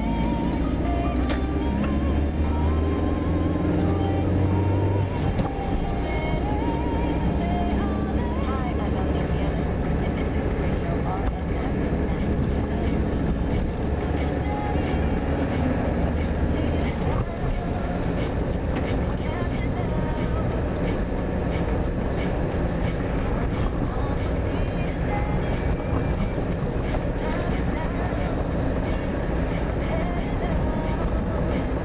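Music with a voice playing inside the cabin of a moving car, over the steady engine and road noise. Held notes stand out in the first half; after that the drive noise dominates.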